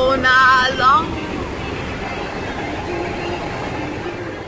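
A girl's voice calls out in a wavering, sing-song tone for about the first second. After that, steady road and wind noise inside a moving car with the windows down.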